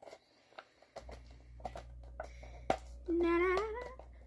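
Small crinkles and clicks of a Pringles snack cup's foil lid being peeled off and handled, with one sharper click late on. Near the end a girl hums a short, slightly rising "mm".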